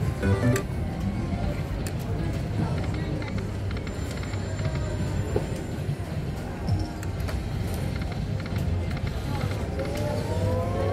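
Big Red Gold poker machine playing its electronic free-games music and reel sounds over the steady hum and chatter of a gaming room. Rising tones come in near the end as the next free spin begins.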